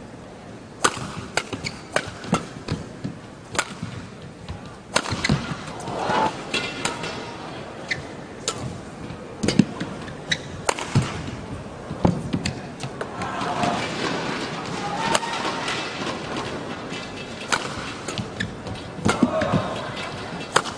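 Badminton rally: sharp, irregular smacks of rackets hitting the shuttlecock, with arena background noise and short pitched sounds of shoes or voices in between.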